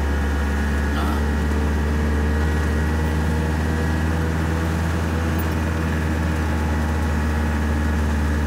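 Small truck's engine running at a steady pace while driving, heard from inside the cab: a constant low drone that holds one pitch throughout.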